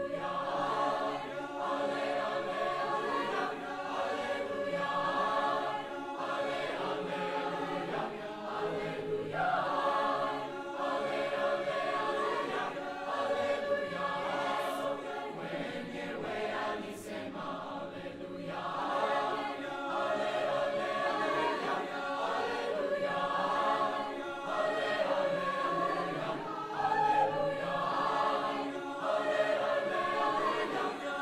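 High school choir singing, many voices holding chords in harmony.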